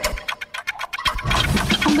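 Game-show countdown clock sound effect: a rapid run of ticks, about ten a second, as the answer time runs out. Background music comes back in after about a second.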